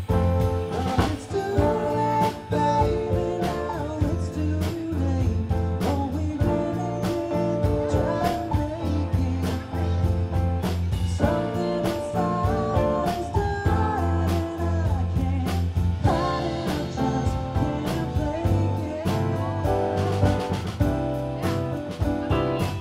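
Live band playing a mid-tempo rock song: electric guitars, electric keyboard and drum kit keeping a steady beat, with a melodic line bending over the chords.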